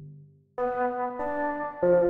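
A virtual flute instrument playing single melody notes one after another, three notes at different pitches, as a high line is tried out; a lower sustained note fades out in the first half second.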